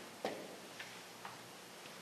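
Felt-tip marker writing on a whiteboard: a few faint, short taps and strokes about half a second apart, the first, about a quarter second in, the loudest.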